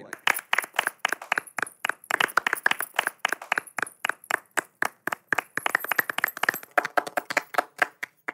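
A small audience clapping: a few people applauding with distinct, uneven claps that thin out and stop near the end.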